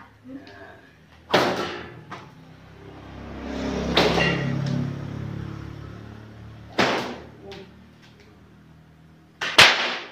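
A 2.5-metre Ponorogo pecut (cemeti) whip with a gombyok tassel, swung overhead and cracked four times, about every two and a half to three seconds; the last crack is the loudest. The cracks are thunderous, with a low rumble swelling and fading between the second and third.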